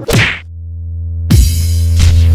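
Logo-intro sound effects: a quick whoosh, then a deep steady drone that swells louder, cut by a sudden loud hit about a second and a half in, followed by a bright noisy ring-out.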